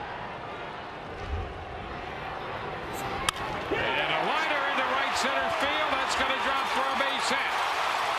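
Over a ballpark crowd's murmur, a wooden baseball bat cracks once against a pitch about three seconds in; the crowd's cheering swells up right after and keeps going.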